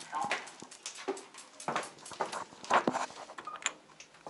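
Handling noise as bags and gear are loaded: irregular clicks, knocks and rustling, with louder clusters about halfway through and near the three-quarter mark.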